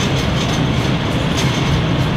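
Steady low rumbling background noise, with the faint scratch of a marker writing on a whiteboard.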